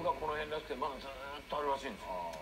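A man speaking Japanese in a television news broadcast, heard through the TV set's speaker.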